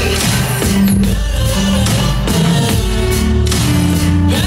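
Klipsch Gig XXL party speaker playing a pop song loudly: an instrumental stretch with a bass line and drums.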